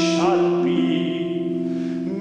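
A male singer holding a long note in a classical song with vibrato, accompanied by a concert harp.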